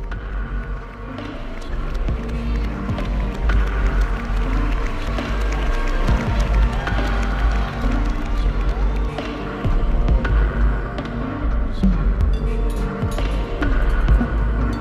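Fixed-media electroacoustic music: a steady deep bass beneath shifting pitched tones and scattered clicks, growing louder over the first few seconds.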